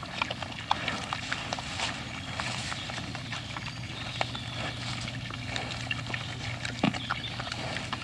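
Herd of wild boar feeding: a dense, steady run of small crunches, clicks and knocks as they root through food, with one louder, deeper sound about seven seconds in.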